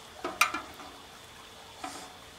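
Aluminum seafood-boil strainer basket knocking against the rim of the stockpot as it is lifted and tilted: two short metallic knocks just after the start and a faint one near the end, over faint hiss and dribble from the draining basket.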